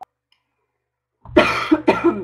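A woman coughing into her hand twice, a short loud cough and then a sharper one, after more than a second of silence.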